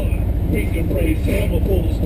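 ATV engines idling with a steady low drone, with a voice heard over them.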